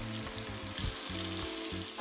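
Spice-coated, skin-on chicken thighs sizzling as they sear skin side down in hot olive oil in an enamelled cast-iron Dutch oven: a steady frying hiss.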